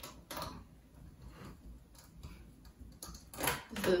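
Small screwdriver turning screws into the plastic bottom cover of a Dell laptop: faint, irregular ticks and clicks.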